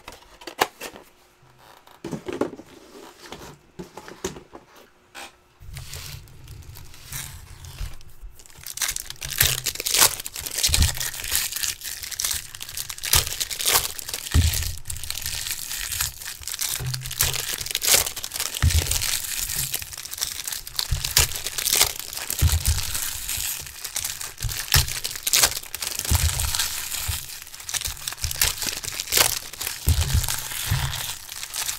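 Foil wrappers of Bowman Chrome trading-card packs being torn open and crinkled by hand: a dense, continuous crinkling with sharp tearing snaps, starting a few seconds in.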